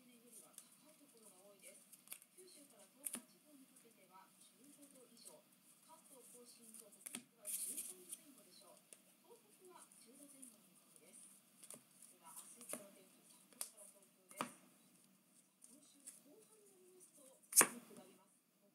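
Trading cards being flipped through a stack in the hands: soft sliding with scattered sharp card snaps, the loudest just before the end. Faint speech runs underneath.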